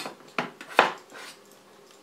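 A cleaver chopping red potatoes on a wooden cutting board: two sharp knocks of the blade into the board in the first second, then a lighter tap.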